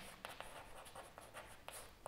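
Chalk writing on a chalkboard: faint, quick taps and scratches of the chalk against the board.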